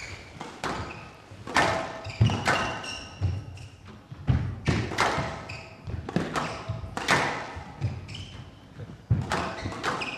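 A squash rally in a large hall: the ball is struck by rackets and smacks off the court walls in a quick, irregular series of sharp hits, about one or two a second. Shoes squeak on the court floor between the hits.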